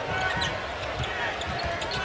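A basketball being dribbled on a hardwood court, irregular low thuds over the steady noise of an arena crowd.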